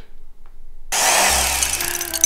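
About a second in, a power tool starts suddenly and runs loud, a comic sound effect of the tool cutting into the man's chest. Music with low bass notes comes in under it.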